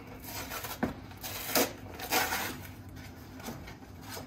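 A long cardboard shipping box handled and turned on a wooden workbench: several short rustling, scraping noises of cardboard, loudest about one and a half and two seconds in.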